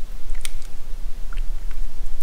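A few faint clicks and scrapes as a spoon is dragged through thick Fluid Film lanolin undercoating in a plastic bucket, over a steady low rumble.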